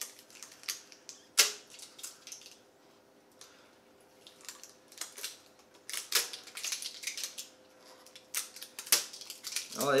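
Protective plastic film being picked and peeled off a bass guitar's pickups: irregular crinkling and sharp snaps of the plastic, with the loudest snaps about a second and a half in and again near the end.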